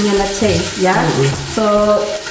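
Chicken frying without added oil in its own skin fat in a lidded Salad Master electric skillet, sizzling steadily, with a woman's voice sounding over it.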